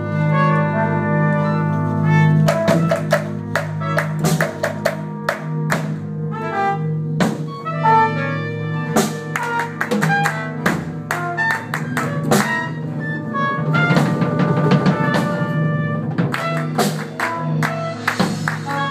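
Jazz big band playing: brass and saxophones over a drum kit, with many sharp accented hits through the passage.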